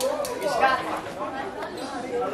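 Background chatter of many students talking at once in a large hall, with no single voice standing out.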